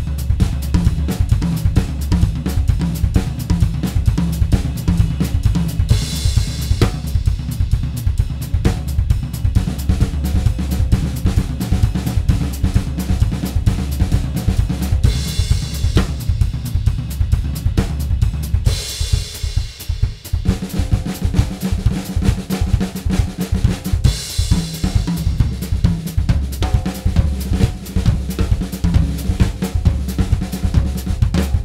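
Drum kit solo: dense polyrhythmic playing on bass drum, snare, toms and hi-hat, with crash cymbals ringing out several times.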